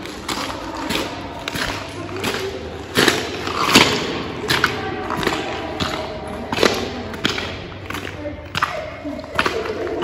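Footsteps of a person walking at a steady pace over a wet, muddy floor, a step about every two-thirds of a second.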